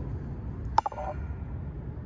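A single sharp metallic clink about a second in, ringing briefly, as the hand-held camera bumps a steel fence picket, over a low steady outdoor rumble.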